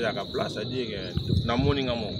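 Crickets singing in a steady, continuous high-pitched ring, with brief bits of a voice speaking over it.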